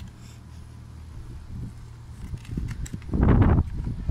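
Wind buffeting the microphone as a low steady rumble, with light rustling and taps from a cardboard snack box being opened and a plastic-wrapped bar of nougat slid out. A louder, rumbling burst of noise comes a little after three seconds in.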